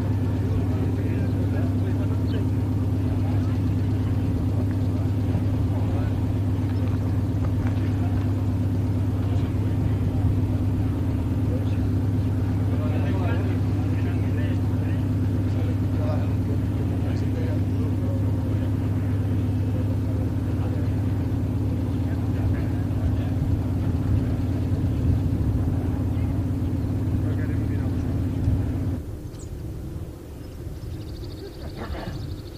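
An engine running steadily at idle close by, a loud, even low hum that stops abruptly near the end.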